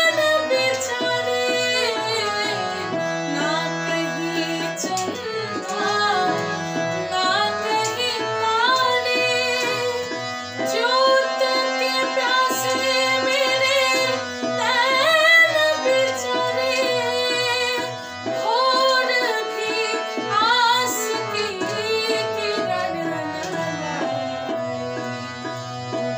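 A woman singing a raga-based Hindi film song in raga Ahir Bhairav, her voice gliding through ornamented melodic turns, over tabla accompaniment keeping a steady rhythm.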